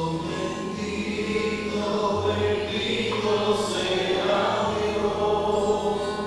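Sacred choral music: several voices singing long held notes.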